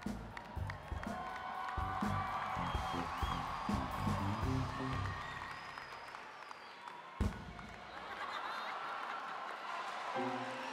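Live stage music with low sustained notes, under an audience cheering and applauding. The low notes stop about six seconds in, and a single sharp thump comes about a second later.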